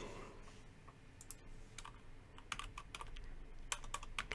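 Typing on a computer keyboard: a run of faint, separate key clicks that starts about a second in and comes thicker in the second half.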